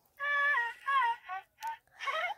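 A high-pitched voice in a sing-song run of four short, wavering notes.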